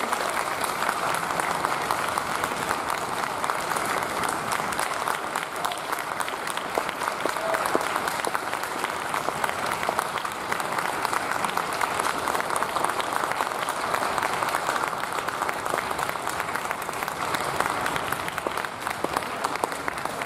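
Audience applauding steadily for about twenty seconds, a dense even patter of handclaps honoring the teachers.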